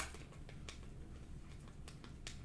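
Faint clicks and rustle of a stack of Panini Prizm football cards being slid through by hand, one card after another, with a couple of soft clicks.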